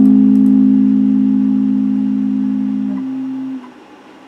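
Electric guitar chord ringing out and slowly fading; one note drops out about three seconds in and the rest stop abruptly just after, leaving a low background hiss.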